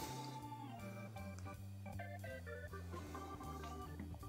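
Quiet background music of sustained keyboard chords that change every second or so.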